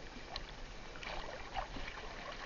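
Seawater splashing and dripping beside a small fishing boat as a gillnet and its float line are hauled through the water, in small irregular splashes.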